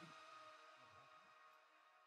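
Tail of background music fading out into near silence, a few sustained notes dying away.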